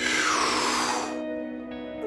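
A deep, forceful breath drawn in through the open mouth: a loud rush of air lasting about a second, then fading. It is one of the deep inhales of the Wim Hof breathing method, over soft background music with sustained notes.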